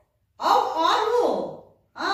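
A woman's voice speaking one short phrase of about a second, cut off by a moment of dead silence before and after.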